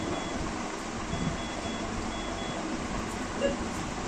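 Short, high electronic beeps in small clusters of two or three, repeating about every second, over a steady room hum.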